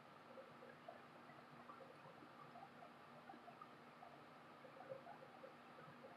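Near silence: room tone with a faint steady hum and a few very faint soft ticks.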